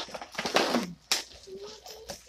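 Cardboard box and plastic packaging rustling as they are handled and pulled open, with a sharp click about a second in.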